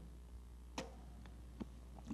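Quiet room tone in a pause between spoken phrases: a steady low hum with two faint short clicks about a second apart.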